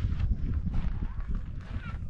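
Wind buffeting an action camera's microphone in an uneven low rumble, with scattered footsteps on gravel.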